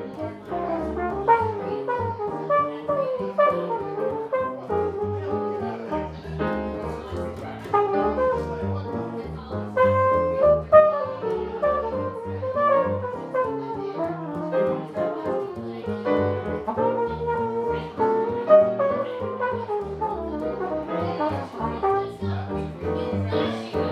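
Jazz trio playing: a flugelhorn carries the melodic line over upright double bass and grand piano, the bass notes moving in steady steps underneath.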